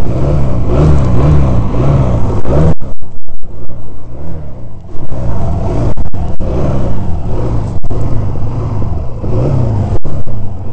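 Honda CD185's small four-stroke parallel-twin engine running at low revs, its pitch rising and falling with the throttle as the bike rides slowly. The sound cuts out briefly a few times, about three seconds in and again near six and eight seconds.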